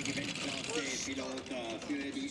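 A two-man bobsleigh running down the ice track, its steel runners rattling and hissing on the ice, with voices heard over it.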